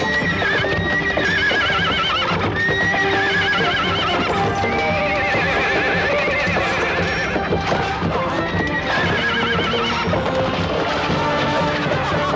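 Horses neighing again and again, with quavering, falling whinnies over the thud of galloping hooves in a cavalry charge, and battle music playing underneath.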